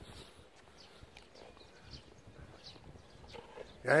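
Faint, irregular footsteps on a dirt path over quiet outdoor background; a man's voice starts at the very end.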